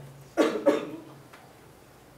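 A person coughing: two quick coughs about half a second in. Faint room tone with a low hum follows.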